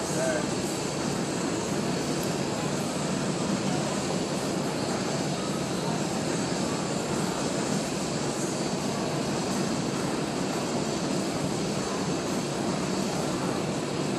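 Steady rushing background noise at an even level, with faint voices underneath.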